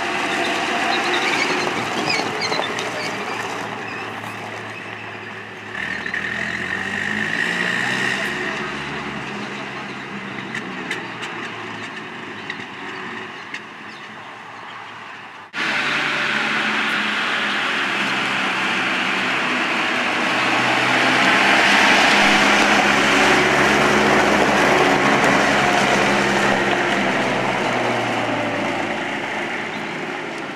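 A wheeled armoured car's engine running as it drives across gravel, its note rising around six seconds in. The sound breaks off abruptly about halfway through and comes back louder as the car runs on.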